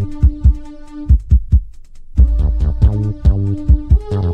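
Late-1990s techno from a club DJ set: a pounding four-on-the-floor kick drum under held synth tones and a bass line. About a second in, the bass and synths drop out for a short break while a few kicks carry on, and the full beat comes back just after two seconds.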